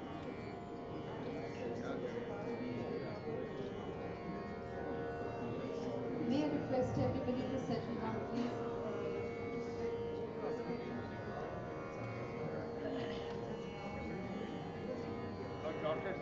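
Steady tanpura drone, a held pitch with many overtones, under the chatter of many people talking at once. The voices grow louder a little past the middle.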